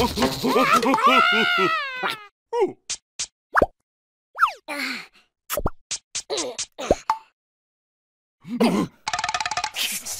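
Cartoon characters' wordless nonsense vocalising with comic sound effects: a wavering vocal cry for about two seconds, then a string of short pops and quick pitch slides. After a silent gap of about a second, there is a brief voice and a short steady tone near the end.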